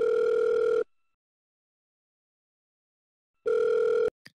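Telephone ringback tone of an outgoing call waiting to be answered: a steady tone that sounds for about a second, goes silent for over two seconds, then rings again near the end.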